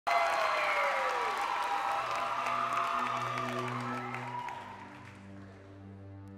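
Audience applause and cheering, loudest at the start and dying away over about five seconds. Under it, about two seconds in, a song's intro of low held notes begins.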